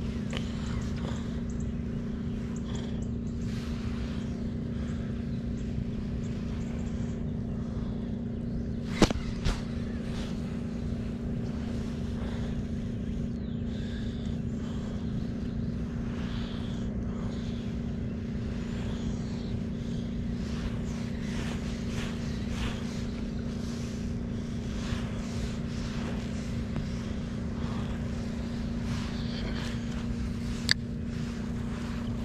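A steady motor hum at one unchanging pitch over a low rumble, with a sharp click about nine seconds in and a smaller one just after.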